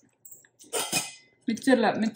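A brief metallic clink from a stainless steel kitchen container being handled, about a second in, followed by a woman's voice near the end.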